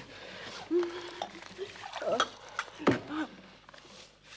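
Water poured from a glass pitcher into a drinking glass, then two sharp clicks and short throaty noises from a person, a little over two seconds in and again near three seconds.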